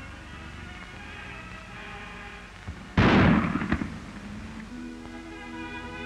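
Background music, broken about three seconds in by a single loud shotgun blast that dies away within about a second: a hammer-type shotgun going off untouched when its hammer catches in a wire fence and snaps forward.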